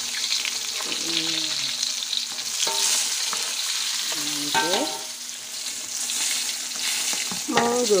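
Whole fish deep-frying in a wok of hot oil, sizzling steadily. A spatula turns the fish and scrapes against the wok a few times, making short pitched scraping sounds.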